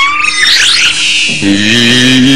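Cartoon music sting: a sudden burst of sliding high tones, then about 1.4 s in a low, slightly wavering held note begins.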